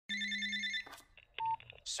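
Electronic telephone ring: one short trilling burst lasting under a second, followed by a brief single beep about one and a half seconds in.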